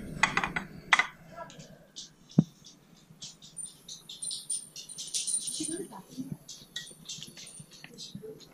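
A person biting into and chewing a soft-tortilla taco of crispy fried fish: faint, scattered crunching and wet mouth noises, with one sharp click about two and a half seconds in.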